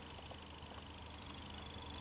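Quiet room tone: a faint steady background with a low hum and a faint high-pitched whine, with nothing else sounding.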